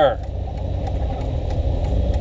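A steady low rumble of a car's engine and road noise, a continuous drone with no change in pitch.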